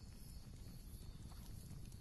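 Near silence: a faint, steady low background hum and hiss.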